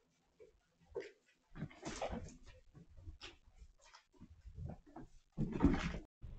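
Cats eating wet food from a stainless-steel tray: wet chewing, smacking and lapping in short, irregular bursts, the loudest shortly before the end.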